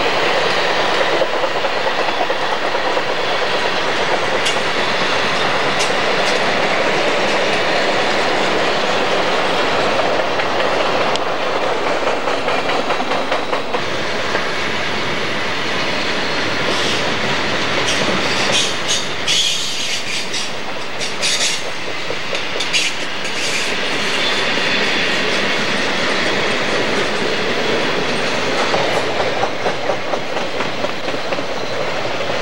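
Freight cars of a long train, boxcars and covered hoppers, rolling past close by: a loud, steady noise of steel wheels running on the rails. About two-thirds of the way through, a run of brief, sharp, high-pitched squeaks cuts through.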